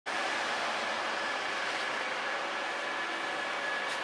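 Steady mechanical noise with a faint, unchanging high whine as a tram is moved along the rails of a low-loader trailer.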